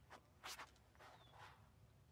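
Faint footsteps and scuffs of a disc golfer's run-up on a concrete tee pad during a drive, the loudest about half a second in.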